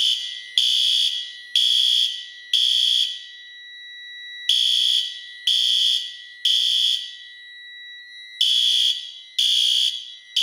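System Sensor SpectrAlert Advance horns, set to low volume, sounding the temporal-three evacuation pattern: groups of three high-pitched blasts about a second apart, with a longer pause between groups. A steady thin high tone sounds underneath.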